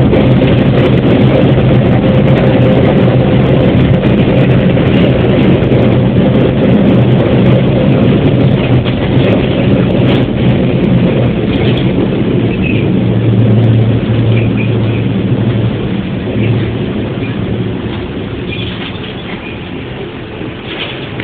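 A KiHa 40 diesel railcar heard from inside the cab while running: a steady low diesel engine hum with wheels rumbling on the rails. The sound grows gradually quieter over the last few seconds as the railcar slows on the approach to a station.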